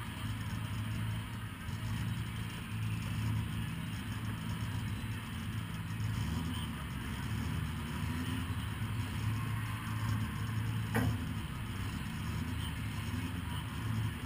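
A 1300 cc stock car's engine idling steadily, heard from inside the stripped cabin, with one sharp click about eleven seconds in.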